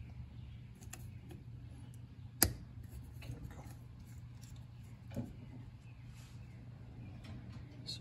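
Small metal clicks and taps from a tool and parts on a Kawasaki JS440 jet ski carburetor as it is taken apart at the inlet needle lever. A sharp click about two and a half seconds in is the loudest sound, and a softer knock comes near five seconds, over a low steady hum.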